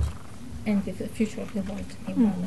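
Quiet, indistinct speech: a voice talking softly in short syllables, well below the level of the main talk.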